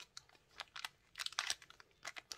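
Small clear plastic zip-lock bag crinkling as it is handled: a scatter of short, faint crackles.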